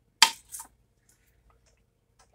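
A pizza cutter set down on a foil-lined metal baking tray: one sharp clack, then a smaller one.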